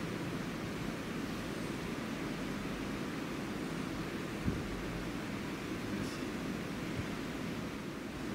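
Steady, even hiss of room tone with no voices, broken by a single soft thump about halfway through.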